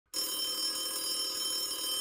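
A telephone ringing: one ring lasting about two seconds, stopping near the end and fading briefly.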